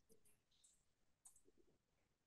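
Near silence on a video call, with a few very faint short clicks, the clearest a little past the middle.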